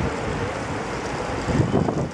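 Steady rushing noise of a large pack of bicycles riding past, with wind on the microphone and a louder burst near the end.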